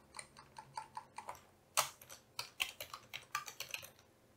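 Typing on a computer keyboard: a quick, irregular run of key clicks, with one louder keystroke a little under two seconds in and a faster flurry near the end.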